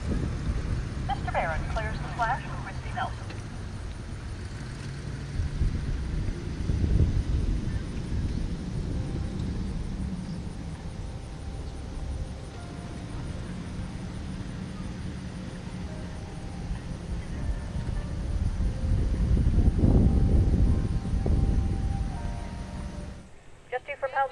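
Low engine rumble of a pickup truck driving close past, then a steady motor drone with wind on the microphone that swells loudest a few seconds before the end. Brief distant voices come in about a second in.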